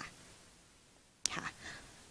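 A pause in speech with quiet room tone, then a little after a second in a short, soft, breathy utterance from a woman speaking into a handheld microphone.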